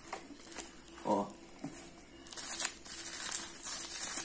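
Plastic bubble wrap crinkling and rustling as it is handled and unwrapped, growing louder and busier from about halfway through.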